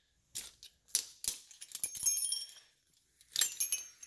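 Metal hardware clicking and clinking as a golf cart coil-over shock and its ratchet-strap compressor are handled and pulled apart: a few sharp clicks, then jangling rattles with a light metallic ring about two seconds in and again near the end.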